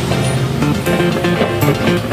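Background music with guitar over a steady beat.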